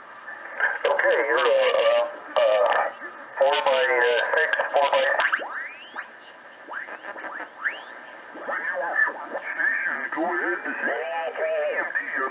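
Amateur radio operators' voices received on the 40-metre band by a BITX40 single-sideband transceiver, coming from its speaker thin and narrow-sounding. A few short rising chirps sound between the voices about halfway through.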